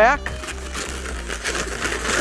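A long latex twisting balloon being folded back and twisted by hand: a soft rubbing and crinkling of the rubber, over background music.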